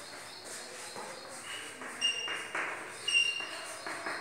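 Chalk writing on a blackboard: scratchy strokes in the second half, with a couple of brief high squeaks.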